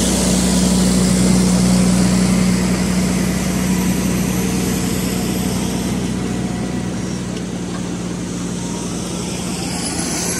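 Fendt tractor's diesel engine running steadily as it drives over a maize silage clamp, compacting the chopped maize. The sound grows gradually fainter in the second half.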